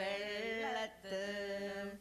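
Two women singing a Jewish Malayalam synagogue song (pallippattu) in a chant-like style, with long, steady held notes in two phrases and a short break about a second in.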